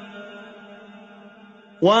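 A man's chanted Quran recitation dies away in a long, fading echo through a pause between verses. The chanted voice comes back in about 1.8 seconds in.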